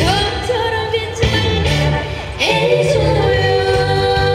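A woman singing a Korean pop song into a microphone over amplified musical accompaniment with a steady beat, her voice sliding up into notes.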